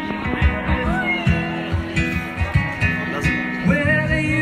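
Live acoustic pop music: acoustic guitar strummed on a steady beat, with a saxophone playing alongside, heard through the venue's PA speakers.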